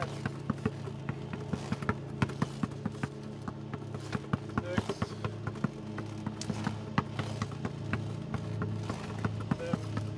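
A basketball bouncing on asphalt in quick, low dribbles, a rapid uneven run of sharp slaps several times a second as it is worked around a wheelchair.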